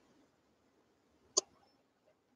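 Quiet, broken by one short, sharp click about one and a half seconds in.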